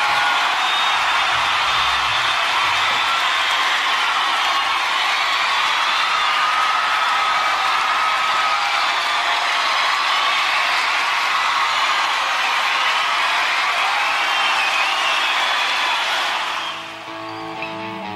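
Audience cheering and applauding, with whoops and whistles, which fades out near the end as a guitar begins playing.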